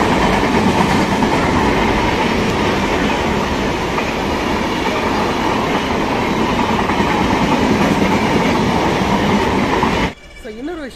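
Indian Railways passenger train running through a station at speed: a loud, steady rumble and rattle of the coaches' wheels on the rails.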